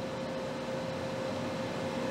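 Steady background hiss and hum from the running video equipment, with a faint constant mid-pitched tone.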